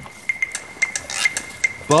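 Sharp metallic clicks and clinks of an old bolt-action rifle being handled, over a faint high tick repeating about three times a second.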